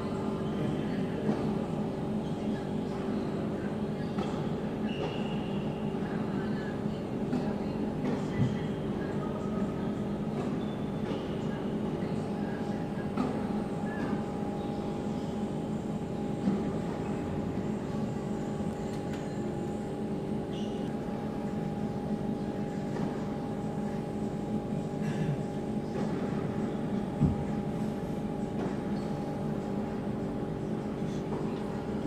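Steady mechanical hum of an indoor tennis hall, with a handful of sharp tennis ball strikes off racquets, the loudest near the end.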